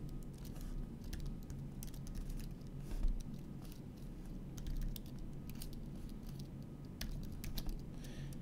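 Typing on a computer keyboard: irregular, scattered key clicks over a low steady hum.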